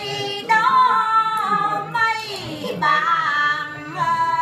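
Women singing quan họ folk song unaccompanied, in long held notes with wavering, ornamented pitch. The phrases break off and start again about half a second in, near two seconds and near three seconds.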